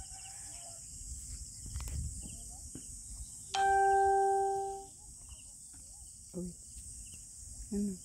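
A single bell-like ringing tone starts suddenly about three and a half seconds in, holds one steady pitch for about a second and then fades. Crickets keep up a steady high drone throughout.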